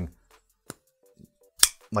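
Shirogorov F95NL folding knife flipped open: a faint tick, then about a second later a sharp snap as the blade breaks past its strong detent and swings out to lock.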